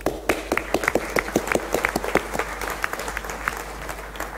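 Audience applauding with many hands clapping, dying away near the end.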